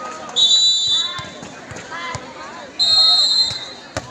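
Referee's whistle blown twice, each blast a steady shrill tone lasting under a second, about two and a half seconds apart, the official signal in volleyball that lets the server serve.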